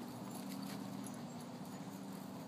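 A dog's paws thudding on grass as it gallops, over a steady low hum.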